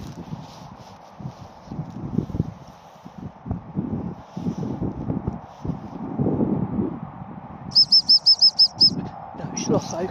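A hunting-dog training whistle blown as a quick run of about seven short, high pips lasting about a second, near the end, over low rustling noise.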